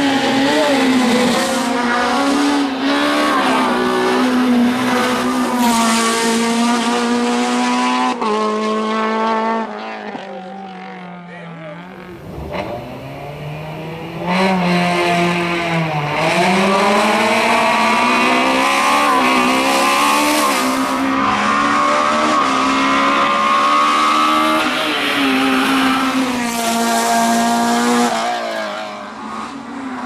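Honda Civic hillclimb car's four-cylinder engine held high in the revs under hard acceleration, its pitch dropping at each gearshift. It goes quieter for a few seconds, then the engine pulls up through the revs again and holds there before backing off near the end.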